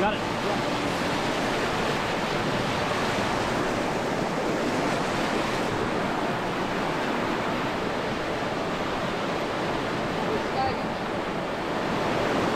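Whitewater of a creek rapid rushing steadily, close up.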